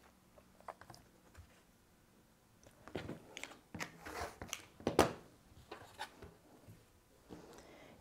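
Rotary cutter slicing through cotton fabric along an acrylic ruler on a cutting mat: a few short, faint cutting strokes between about three and five seconds in, the loudest near five seconds.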